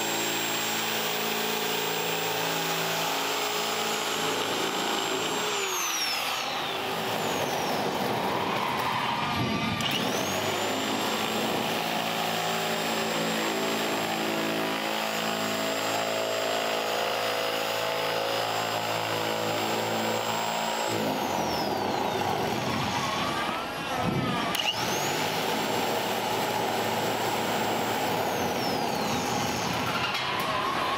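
Handheld corded electric sheet metal shear running while it cuts a curve through sheet steel, a steady motor whine. Twice the whine sags in pitch and climbs back up.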